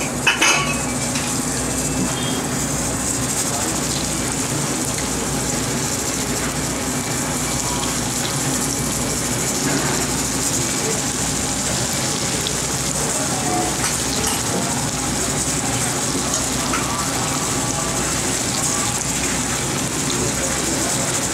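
Oil in a kadai sizzling steadily as mixed-dal pakoda batter deep-fries, with a brief clatter about half a second in.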